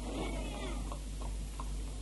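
A cat meowing faintly in the first second, over a low steady hum.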